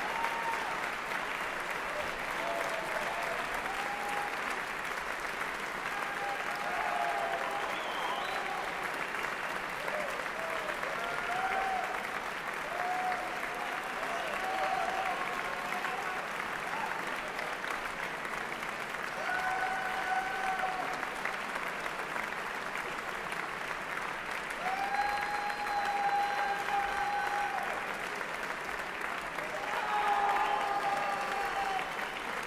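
Large concert-hall audience applauding steadily, with a few voices calling out over the clapping.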